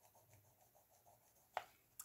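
Colored pencil shading on paper: faint, quick, even strokes of a Crayola Colors of the World pencil. A short sharp click about one and a half seconds in.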